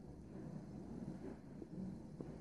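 Soft sounds of a man sipping and swallowing stout from a pint glass over a faint, steady low rumble of room noise.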